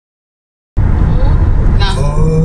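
Car cabin noise while driving: a steady low rumble of road and engine, starting about three quarters of a second in. A brief voice sound comes near the end.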